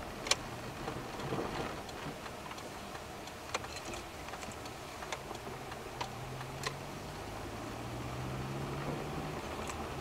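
Car cabin noise picked up by a dashcam while driving: a steady road rumble with a low engine hum that comes in about halfway through and rises slightly as the car gets under way on the main road. A handful of sharp, irregular clicks, interior rattles, are scattered throughout.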